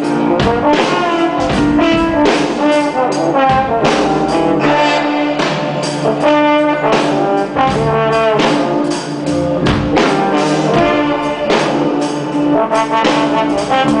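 Live orchestra jamming: a brass section with trombone and trumpet plays sustained lines over a steady drum beat.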